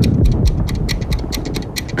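Trailer sound design: a rapid, even mechanical ticking of about six or seven ticks a second, with a deep low boom in the first half second.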